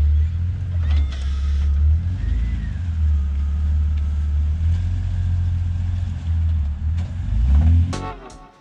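A Jeep Cherokee XJ plow rig's engine running as it reverses away from a snowbank and turns, heard as a loud, steady low rumble.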